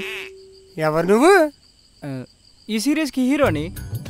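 Crickets chirping steadily in a thin, high pulsing trill, under a few short wordless vocal sounds whose pitch slides up and down. Low music comes in near the end.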